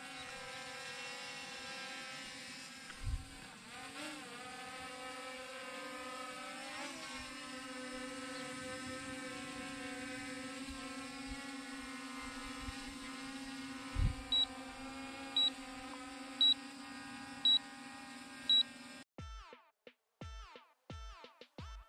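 Quadcopter drone's electric motors and propellers whining steadily in flight, the pitch shifting briefly a few seconds in as the throttle changes, with two dull thumps. Near the end come five short high beeps about a second apart, then the whine cuts off and electronic music starts.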